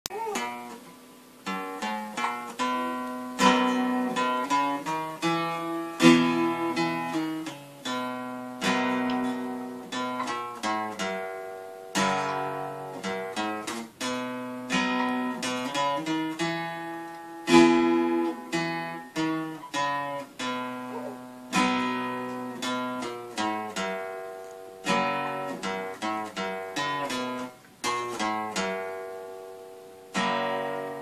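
Solo steel-string cutaway acoustic guitar, played by picking separate notes over ringing bass notes, in a gentle phrase that repeats every few seconds.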